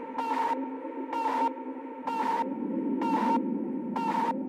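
Minimal techno from a DJ mix in a beatless passage: a held synth tone over a low drone, with a swishing noise sweep repeating about once a second.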